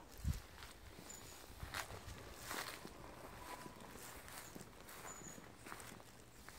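Faint footsteps of a person walking, soft irregular steps.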